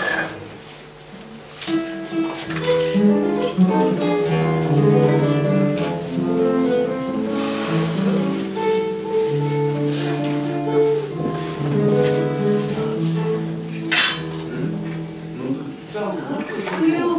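Acoustic guitar played solo, picked single notes and chords starting about two seconds in: the instrumental introduction to a Russian romance before the singing begins. A single sharp click near the end.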